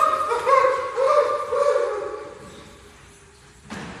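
A wordless high voice repeating a scooping note about twice a second, fading away within the first two seconds, then a single thump near the end.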